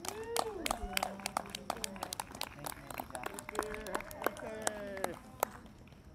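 A small group clapping by hand, with several voices calling out over it; the clapping and voices stop about five and a half seconds in.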